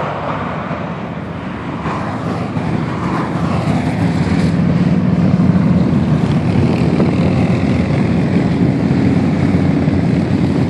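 A line of motorcycles riding past on a highway, their engines making a steady low drone that builds about four seconds in and stays loud. At the start, cars pass close by on the near lanes with tyre and road noise.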